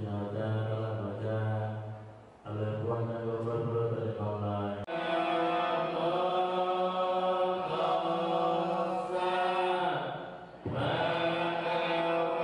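Buddhist monks chanting in long, held tones. There is a brief pause about two seconds in. About five seconds in the chant shifts abruptly to a higher pitch, and it dips briefly near the end.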